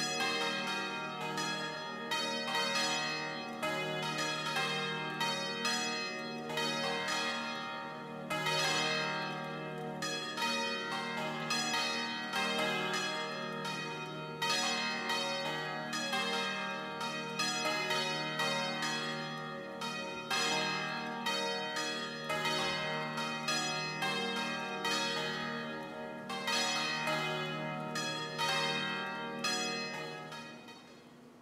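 Church bells ringing, many strikes in quick succession with the tones overlapping and ringing on; the run dies away at the very end. It is a call to worship just before the service begins.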